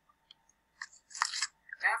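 A woman's short intake of breath with a mouth click, just before she starts speaking near the end.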